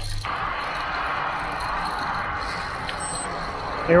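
Steady rushing noise of a mountain bike in motion, its tyres rolling over a dirt path, with one short high beep about three seconds in.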